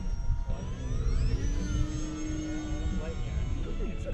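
Radio-controlled model airplane's motor spinning up for takeoff: a whine that rises in pitch over about a second, then a pitch sweeping down as the plane passes. Steady motor tones from other model aircraft and a low rumble run beneath.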